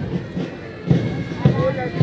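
School pipe band playing, a drum beating roughly every half second under the steady tone of the pipes.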